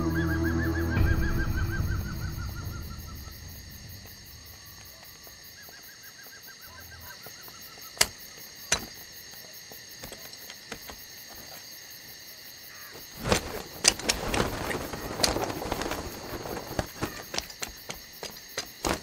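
Film soundtrack music fading out, giving way to a quiet night ambience with a faint falling trill. Two sharp clicks come about eight seconds in, and from about thirteen seconds a busy run of clicks and rustling begins.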